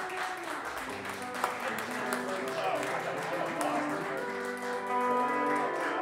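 Pedal steel and electric guitar softly holding and changing sustained notes as a slow country ballad winds down, with voices talking over it. A single sharp click about one and a half seconds in.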